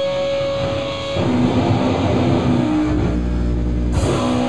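Live amplified electric guitar and bass guitar holding long sustained notes, which move to new pitches about a second in.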